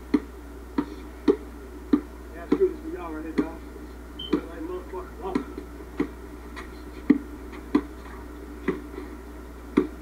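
A basketball dribbled on an outdoor court, bouncing steadily about twice a second, with faint voices from the players.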